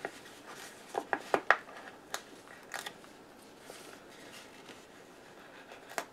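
A paper sticker sheet being pulled out of a sticker book: a handful of short, crisp paper tears and crackles in the first three seconds, then faint handling.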